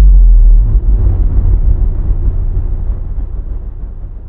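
Loud, very deep rumbling boom of a logo-intro sound effect, its low rumble slowly dying away.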